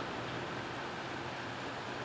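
Steady outdoor ambience of a wet street: light rain and distant road traffic, heard as an even hiss with a faint low hum.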